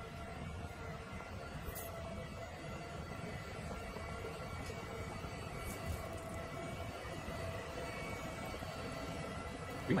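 iLife Shinebot W450 robot mop running as it mops: a steady motor hum with a few thin, steady whining tones above it.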